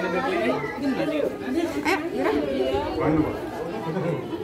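Indistinct chatter: several people talking at once, no words clear.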